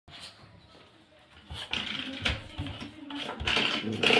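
An Irish Wolfhound puppy playing at a spring door stopper. About a second and a half in, a run of short knocks starts, mixed with brief ringing twangs.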